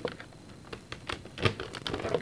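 Scattered light clicks and taps of a plastic Nerf blaster being handled and a trigger cable being plugged into its grip.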